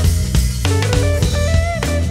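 Live band playing: electric guitar over bass and drum kit, with the guitar bending a note upward near the end.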